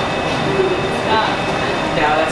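Indistinct voices over a steady, dense rumbling noise, with a brief bit of speech-like sound about a second in.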